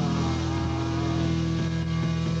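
Live rock band holding a sustained, distorted electric-guitar chord that rings steadily, with a couple of light drum hits in the second half.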